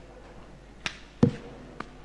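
Three short, sharp taps over a faint steady hum; the second, just past a second in, is the loudest and carries a dull thud.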